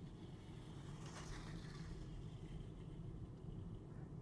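Faint, steady low rumble inside the cabin of a Tesla Model 3 Performance rolling slowly at low speed.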